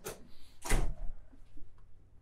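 An office door swinging shut: a brief scrape at the start, then a heavy thud just under a second in.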